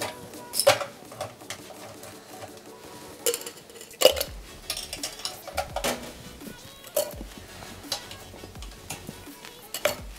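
Ice cubes scooped into a stainless steel cocktail shaker tin, clattering in a series of separate clinks.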